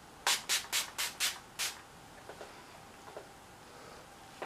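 A pump spray bottle of e.l.f. makeup mist and set spritzing six times in quick succession, each a short hiss, misting setting spray onto the face. A couple of faint small clicks follow.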